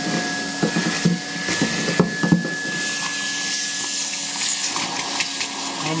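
Henry vacuum cleaner running with a steady motor whine as its hose sucks limescale deposits out of a hot water cylinder's immersion heater opening. Scattered clicks and rattles come as bits of scale are drawn up the hose.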